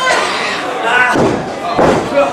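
A heavy thud on the wrestling ring near the end, a body or foot hitting the canvas, amid shouting voices from the ring and crowd.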